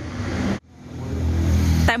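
A vehicle passing close by on the street, its noise swelling steadily for over a second. It follows a sudden cut from fainter room noise.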